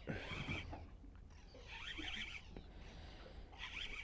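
Faint whirring of a fishing reel being wound in against a hooked fish, in three short spells, over a low steady rumble.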